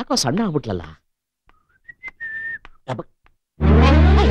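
Whistling: a short single note that rises, then holds steady for about half a second, a couple of seconds in. Before it, a voice warbles up and down for about a second, and a loud low-pitched sound comes in near the end.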